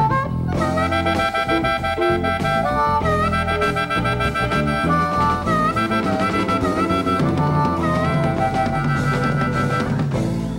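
Amplified blues harmonica soloing in long held notes that bend down and back up, over electric bass and a drum kit in a slow blues.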